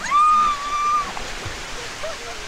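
A young child's high squeal, held on one pitch for about a second, over the steady rush of splashing pool fountains.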